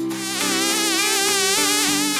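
A fly's buzz sound effect, starting abruptly and wavering up and down in pitch, over background music.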